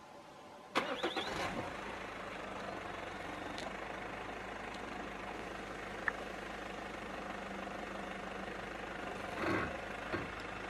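A vehicle engine cranks and starts about a second in, then idles steadily, with a short louder swell near the end.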